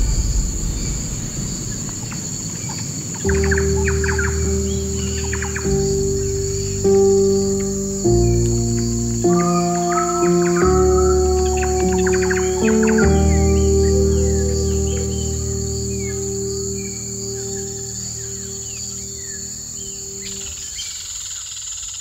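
Nature soundscape of insects trilling steadily and birds chirping, under slow sustained music chords that change every second or two; it all fades out near the end.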